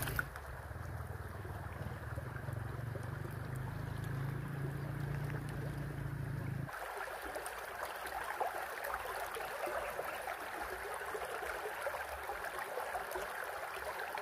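Shallow creek water running and trickling over stones, with a low steady rumble under it at first. About halfway through, the sound changes suddenly to a closer, brighter rush of water flowing over rocks.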